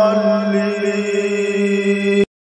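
A male voice chanting, holding one long steady note.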